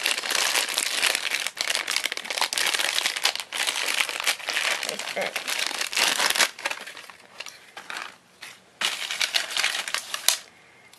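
Plastic toy packaging crinkling as it is handled and opened, dense and continuous for about the first six seconds, then thinning to scattered crackles.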